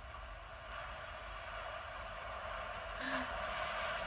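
Ocean surf washing in, a steady hiss that slowly grows louder.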